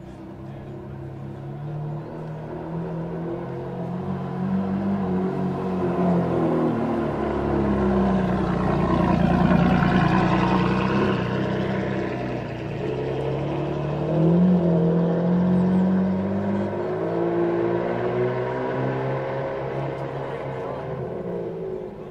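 Maserati MC12's V12 engine with a custom exhaust, running at low speed as the car rolls past, getting louder to a peak near the middle and then fading as it pulls away. A short rev about two-thirds of the way through.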